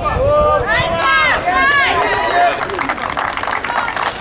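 A voice speaking loudly, followed by a dense run of sharp claps in the second half, the scattered hand-clapping of a small crowd.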